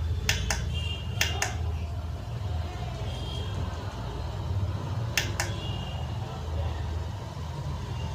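Push button on a T1000S pixel LED controller clicking three times, each a quick press-and-release double click, early, about a second in and about five seconds in. The presses step the controller through its LED animation modes. A steady low hum runs underneath.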